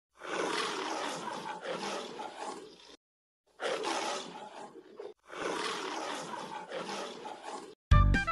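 Lion roar of the MGM studio logo, used as a sound effect: three roars in a row, the first the longest, with a short silence after it and a shorter gap before the third.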